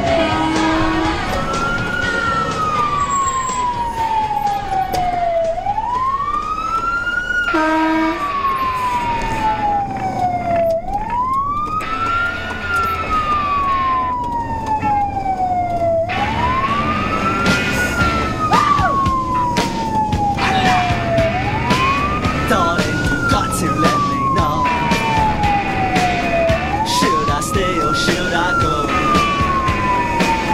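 Fire engine's wailing siren, rising quickly and then falling slowly in a cycle of about five seconds, heard from inside the cab over road noise.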